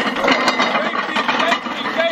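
Weighted steel sleds loaded with plates, dragged fast across grass on tow straps: a continuous, loud, rough scraping.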